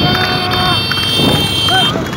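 Motorcycle engines running and wind rushing on the microphone while riding alongside a galloping pony, with people shouting. A steady high-pitched tone cuts off just before the end.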